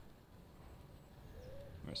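Quiet outdoor ambience with no distinct event, a faint short tone about one and a half seconds in; a man's voice starts right at the end.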